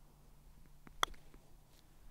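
A single sharp click of a putter striking a golf ball about a second in, with a couple of faint ticks just before it.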